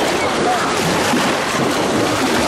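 Steady rushing of wind on the microphone mixed with small waves washing in shallow bay water.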